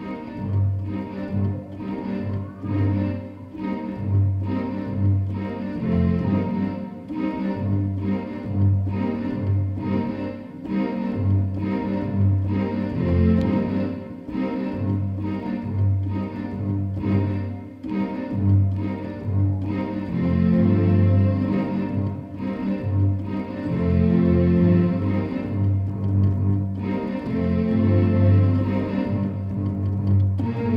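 Hip hop beat played on a Kurzweil PC3K keyboard workstation: regular drum hits about twice a second over a pulsing bass line, with pitched keyboard parts on top.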